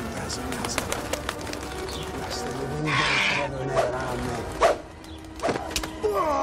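Pigeons calling and cooing, with many small clicks and a loud, harsh burst of sound about three seconds in.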